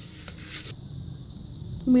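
Metal tongs scraping on a tawa griddle as the cooked paratha roll is lifted off, a short rasping scrape that stops under a second in.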